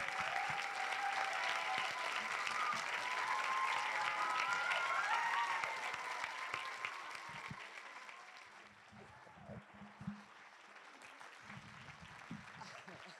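Audience applauding and cheering, with voices calling out over the clapping, dying away over the second half.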